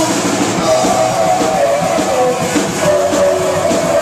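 Live punk rock band playing loud and fast in a small club, with a drum kit and distorted electric guitars, heard from inside the crowd.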